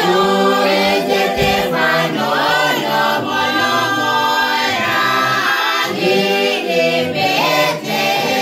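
A small mixed group of men and women singing a Christmas carol together, unaccompanied.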